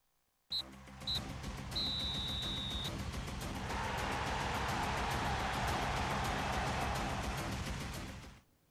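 TV sports-show bumper jingle: it starts suddenly with two short high beeps and a held high tone, then runs on as a fast steady beat under a swelling rush of noise.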